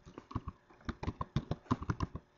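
Computer keyboard keys clicking in quick succession as a word is typed, several keystrokes a second.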